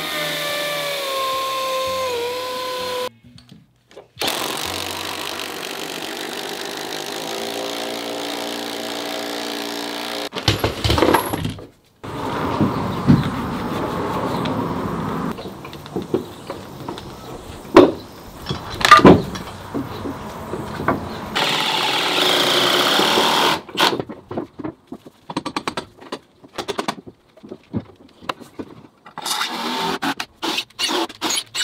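Cordless drill-driver running in several separate bursts: a steady whine that sags slightly in pitch at the start, then longer runs. A few sharp knocks in the middle and a run of quick clicks near the end.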